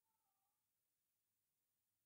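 Near silence, with a very faint, brief wavering tone in the first half second.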